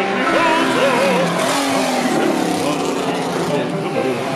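Bugatti Type 35 straight-eight racing engine running at speed as the car comes past, its noisy rush taking over about a second in. Operatic singing with a wide vibrato is heard under it at the start.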